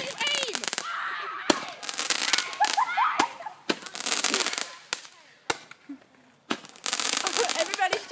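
Fireworks going off: dense rapid crackling, then a string of separate sharp pops, then dense crackling again near the end.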